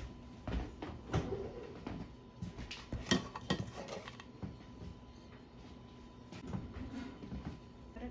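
Kitchen clatter at the oven: a run of knocks and metallic clicks from metal bakeware being handled, loudest in a cluster about three seconds in and thinning out after about four and a half seconds.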